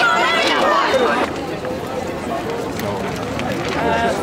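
Several people talking at once in a crowd. One voice stands out for the first second or so, then the voices blur into a general babble.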